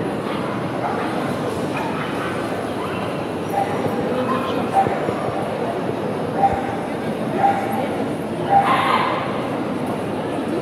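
Small dogs yapping in short yips, several in the second half with the loudest near the end, over a steady hubbub of crowd chatter echoing in a large hall.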